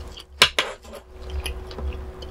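A spoon knocking against a dish twice in quick succession about half a second in: two sharp clacks as it is set down.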